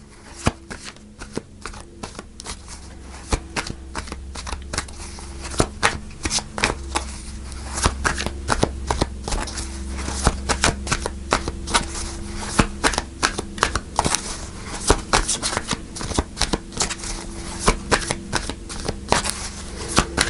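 A tarot deck being shuffled by hand: a continuous run of short card snaps and clicks, growing busier in the second half.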